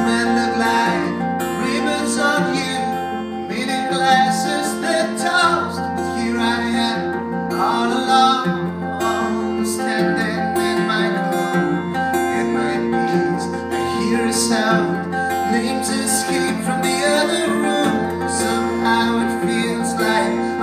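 Acoustic guitar strummed steadily, with a man's voice singing over it at times.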